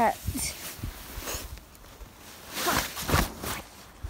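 Footsteps, scuffs and knocks of boots on a wooden fence and snow while climbing over it, with jacket fabric rubbing close to the microphone; irregular, loudest about three seconds in.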